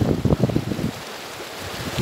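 Wind buffeting the microphone in irregular low gusts, strongest in the first second, then easing off to a quieter rumble.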